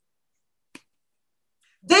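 Silence, broken by a single short click a little under a second in; a woman's voice starts speaking just at the end.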